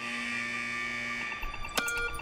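Trailer soundtrack played through a hall's speakers: a steady, buzzer-like electronic tone for just over a second, then a few sharp hits near the end.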